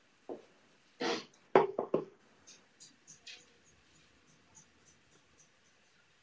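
Indoor handling noises: a brief rustle about a second in, then three sharp knocks in quick succession, followed by faint scattered ticks.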